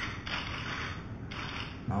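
Camera shutters firing in rapid bursts: a dense run of mechanical clicks, strongest in the first half of the pause and thinning out before the voice resumes.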